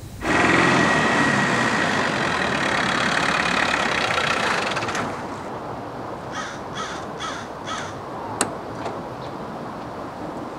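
A loud rushing noise that starts abruptly and eases off after about five seconds, then a crow cawing four times in quick succession, followed by a single sharp click.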